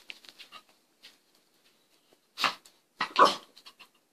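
Miniature pinscher barking twice, two short sharp barks under a second apart in the second half, after a few faint soft sounds.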